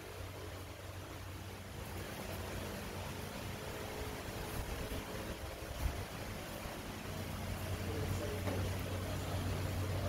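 Steady low mechanical hum under an even hiss, growing a little louder in the second half.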